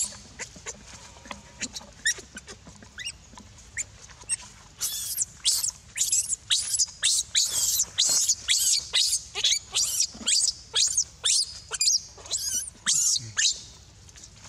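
Baby macaque squealing in distress while another monkey grabs at it and pulls it from its mother. The squeals are short, high-pitched and mostly falling in pitch. A few come early, then from about five seconds in they come rapidly, several a second.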